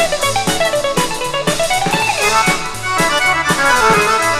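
Instrumental introduction of a 1950s Greek laïko song: plucked-string band with bouzouki and guitars over a steady beat of about two a second, the melody line sliding down and then up in pitch.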